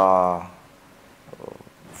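A man speaking: a drawn-out word trails off in the first half second, followed by a pause of about a second and a half before speech resumes.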